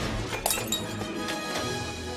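Dramatic film score with the crashing and clattering of falling junk: one sharp shattering crash about half a second in, then a few lighter clinks and knocks.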